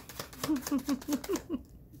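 A woman giggling softly, a run of about six short falling laughs, over a quick patter of clicks from a tarot deck being shuffled in her hands. Both stop about a second and a half in.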